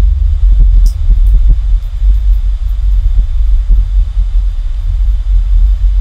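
Steady low rumble of background noise, with a few faint keyboard taps in the first couple of seconds as a password is typed.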